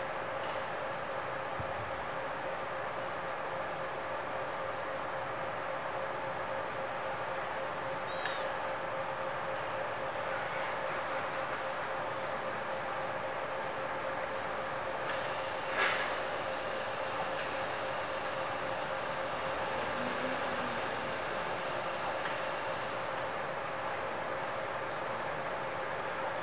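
Steady background hum and hiss with a constant mid-pitched tone, like distant machinery, and one short sharp click about two-thirds of the way through.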